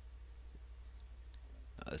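A few faint computer mouse clicks over a steady low electrical hum, with a man's voice starting up near the end.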